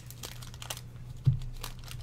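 Wax-paper wrapper of a 1983 Donruss baseball card pack crinkling as the pack is opened and the cards handled, with a short thump a little past halfway.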